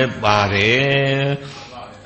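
A Buddhist monk's voice intoning Pali in a long, steady chant-like tone into a microphone. It drops to a soft, faint sound for the last half second.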